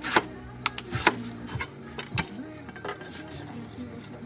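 Screwdriver tip scratching a score line into glazed ceramic wall tile: a few short, sharp scraping strokes and clicks, the loudest right at the start.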